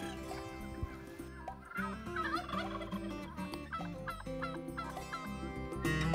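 A flock of Royal Palm turkeys gobbling, several calls overlapping.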